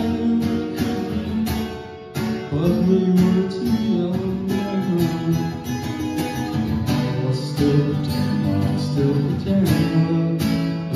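Acoustic guitar strummed in a steady rhythm of chords, with a short break about two seconds in.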